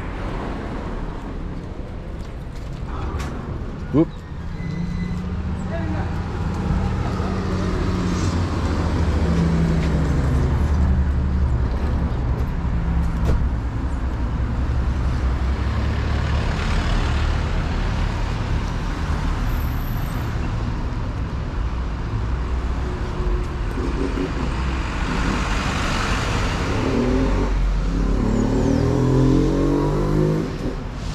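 City street traffic: car engines running and passing by at close range, with a sharp click about four seconds in.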